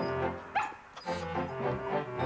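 Background music with a small terrier barking about half a second in.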